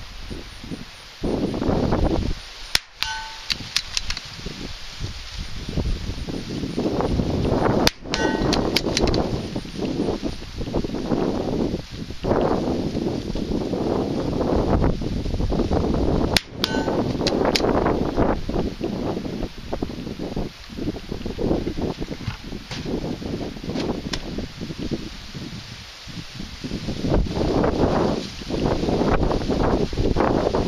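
Three rifle shots, about 3, 8 and 16.5 seconds in, each a single sharp crack. Between them, wind buffets the microphone and rustles dry cornstalks in uneven gusts.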